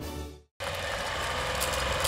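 Theme music fades out about half a second in. After a brief gap, a steady mechanical whirring clatter with hiss starts: an old film-projector sound effect.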